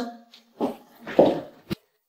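A person's short wordless vocal sounds: a brief hum, then two breathy bursts, ending in a sharp click, after which the sound stops dead.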